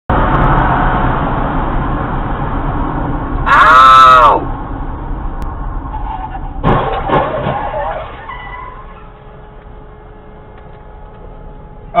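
Road and engine noise of a car driving, heard from inside, easing off in the last few seconds as the car slows. About three and a half seconds in, a loud pitched cry rises and falls over most of a second, and near seven seconds there is a sharp knock followed by a few brief sounds.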